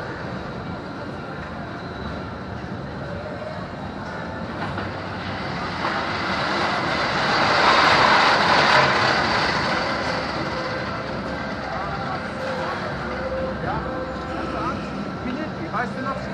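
A roller coaster train running past on its steel track: a rolling rumble that swells to a peak about eight seconds in and then fades. Under it, fairground background noise with people's voices.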